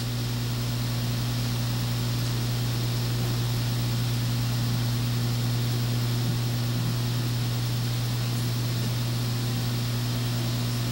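Steady low hum with an even hiss, unchanging throughout, typical of electrical hum and noise from a sound system.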